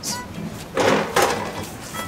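A metal pan scraping as it is slid across a steel stove top: one short scrape about a second in.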